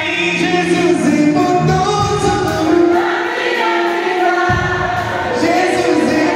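Live gospel music: a male singer on a microphone over amplified accompaniment, with other voices singing along. The deep bass comes back in about four and a half seconds in.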